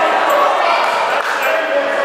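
Overlapping shouts of encouragement from ringside during a kickboxing clinch, echoing in a large sports hall.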